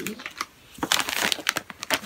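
A plastic snack bag crinkling as it is handled, a quick run of crackles and rustles starting about a second in.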